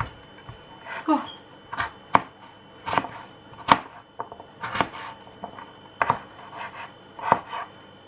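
Knife chopping butternut squash on a cutting board: sharp, irregular knocks about once a second, some in quick pairs.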